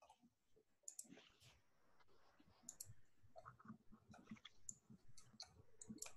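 Near silence with faint, irregular clicks and small knocks scattered through it.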